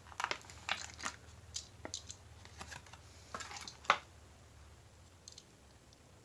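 Clear plastic blister packaging crinkling and clicking as a small diecast car is worked out of its pre-cut package by hand, with one sharper snap about four seconds in.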